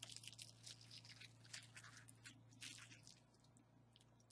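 Faint crinkling of plastic packaging, bubble wrap and a clear plastic bag, as a piece of jewelry is unwrapped by hand; the rustling dies away about three seconds in.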